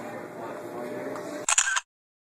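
Faint in-store murmur of voices, cut off about one and a half seconds in by a single short, loud camera shutter click.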